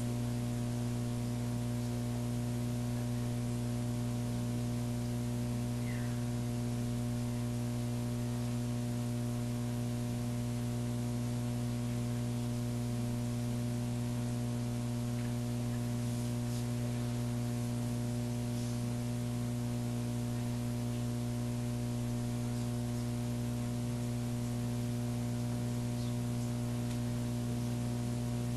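Steady electrical mains hum in the audio system, a low buzz with a ladder of higher overtones over a faint hiss, unchanging throughout.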